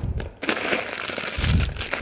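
Plastic wrapping crinkling and rustling as a bagged bundle of string lights is pulled out of a cardboard carton, with a soft low bump about one and a half seconds in.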